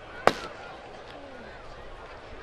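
A pitched baseball popping into a catcher's mitt once, a sharp loud smack with a short ring, about a quarter second in.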